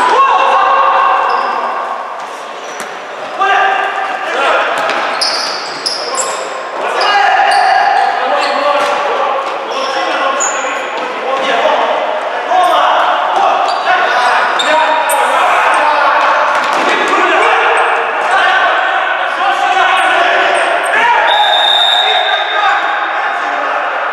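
Futsal players shouting calls to each other in an echoing sports hall, with ball kicks and thuds and short sneaker squeaks on the wooden floor.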